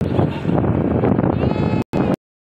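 Wind noise on the microphone of a phone dashcam in a moving vehicle, loud and steady, with the audio cutting out for a moment near the end. Just before the cutout, a short high-pitched sound rises above the noise.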